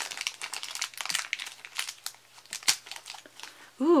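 A crinkly plastic toy wrapper being handled and pulled open: irregular crackling and clicking, with one sharper click about two-thirds of the way through.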